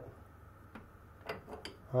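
A few faint metal clicks and ticks from a lathe chuck and wrench being handled while a tap is turned by hand to cut a thread, spread over the second half.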